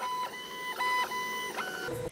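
Stepper motors of a Longer Ray5 diode laser engraver whining as the laser head traces the framing outline of the job. The whine breaks and shifts pitch a few times as the head changes direction.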